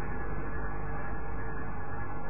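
Steady hiss of a low-fidelity recording with a faint steady hum under it, and no speech.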